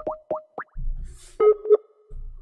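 Electronic alert sound: a quick run of four rising bloop-like chirps, then two short beeps about one and a half seconds in.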